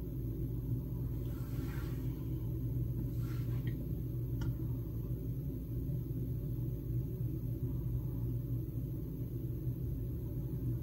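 Steady low hum and rumble of room background noise, with two faint soft rustles and a small click about four and a half seconds in.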